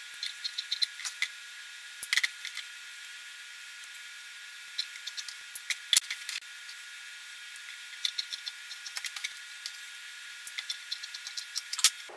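Scissors snipping through blouse fabric in several short runs of quick clicks, with cloth being handled in between.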